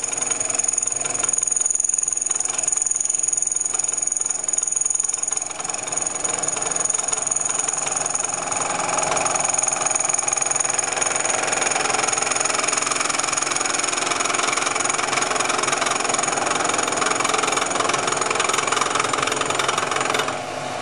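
Milling machine running, its cutter taking a light skim cut across the crown of a hypereutectic aluminium piston. A steady machining noise with a high whine.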